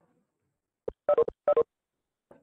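Electronic notification tones from a video-meeting app: a short blip, then two quick double beeps a little past a second in, the tones the app plays as participants leave the call.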